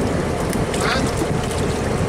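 Steady low rumble with wind buffeting the microphone, the open-air noise of a fishing boat and harbour, with a short snatch of a voice just under a second in.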